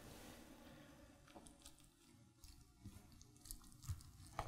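Near silence with a few faint, scattered crunches and taps: a chef's knife cutting down through a lasagna with a browned cheese top, on a plate.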